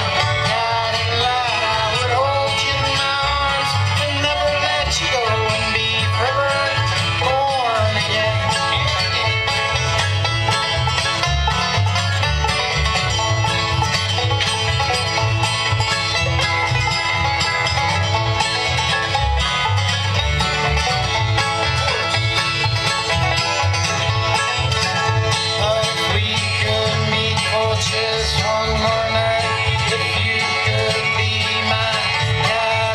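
Live bluegrass band playing fiddle, mandolin, banjo, acoustic guitar and upright bass together at a steady level.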